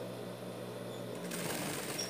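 A steady low hum, then an industrial straight-stitch sewing machine starts stitching a little over a second in and runs on steadily.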